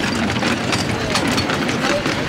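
Live-steam miniature railway train passing close by, its wheels and riding cars running over the track with a quick, irregular clicking and clattering over a low rumble.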